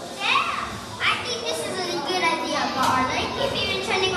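A group of children's voices calling out and chattering at once, high-pitched and overlapping, with sharp rising shouts about a third of a second and a second in.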